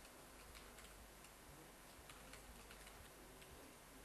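Faint, irregular keystrokes on a computer keyboard: a string of light clicks as a password is typed, over a low steady hum.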